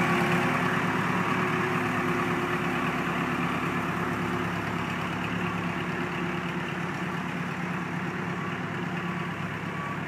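Case 580 Super backhoe loader's diesel engine running steadily as the machine drives off carrying a coaster car, slowly fading as it moves away.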